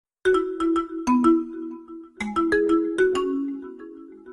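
Music: a light melody of sharply struck notes that ring and die away, in short groups of two to four, starting a moment in and fading toward the end.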